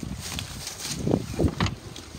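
Footsteps and rustling through tall dry grass, with a few soft thumps about a second in.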